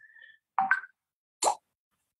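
Three brief sounds with silence between: a faint short beep at the start, a short pop just over half a second in, and a sharp click about a second and a half in.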